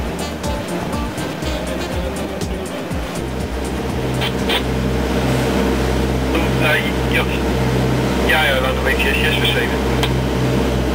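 Background music for about the first three seconds, then the steady low drone of the motor cruiser's engine heard from inside its cabin, with brief snatches of voice over it from about four seconds in.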